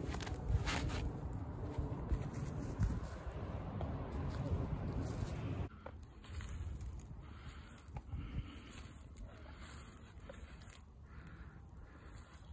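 Footsteps crunching and shuffling through deep dry leaf litter. The rustling drops sharply in level about halfway through and goes on more faintly and unevenly.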